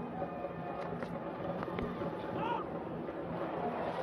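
Cricket ground ambience: steady crowd noise with music playing, and a single sharp knock a little under two seconds in.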